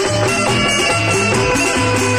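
Live Hindi devotional bhajan music played on instruments through a PA system: sustained melody notes over a repeating bass line with a steady rhythm.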